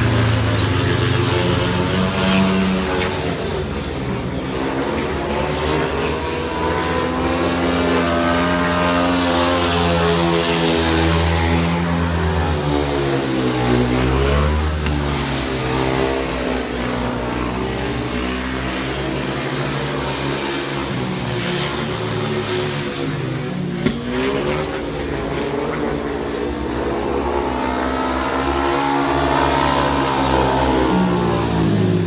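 Speedway motorcycles racing, their 500cc single-cylinder methanol engines running hard, the pitch rising and falling as the bikes work through the bends and pass by. The note dips sharply about fourteen seconds in and again near twenty-four seconds, with a brief click at the second dip.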